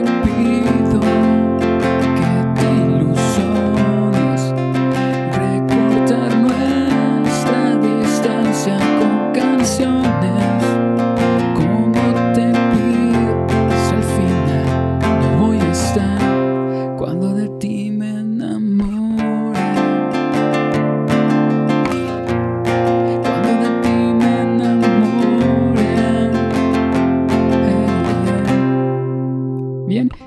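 Nylon-string classical guitar with a capo at the first fret, strummed steadily through a repeating four-chord progression (C#m, A, E, B), the chords changing every couple of seconds. The last chord rings out near the end.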